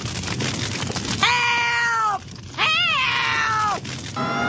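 Two long, shrill cries from an elderly woman's cartoon voice, drawn-out calls of "Help!" from inside the burning house. The first starts about a second in and the second, wavering at its start, comes a second later. Under them runs a steady crackle of the house fire.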